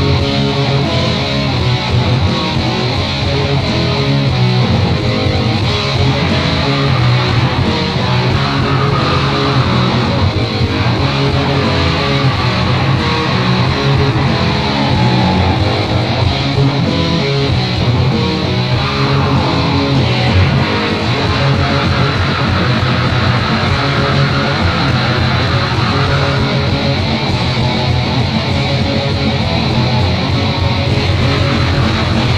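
Black metal song from a cassette demo recording: fast-strummed electric guitars in a dense, unbroken wall of sound at a steady loud level.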